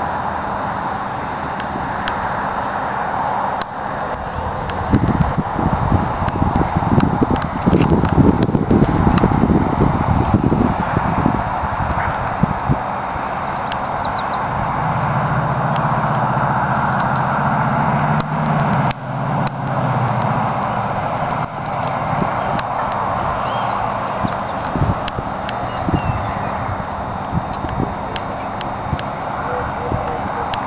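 Steady hiss of highway traffic, with wind and footsteps on pavement heavy in the first half. Partway through, a car engine left running hums at idle close by for several seconds.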